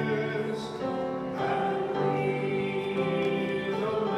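Choir singing, with long held chords that change pitch every second or so.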